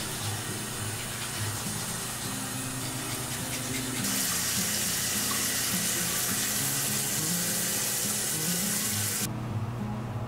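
A bathroom sink tap running into the basin, louder from about four seconds in and cutting off abruptly near the end, over a low, slow background music melody.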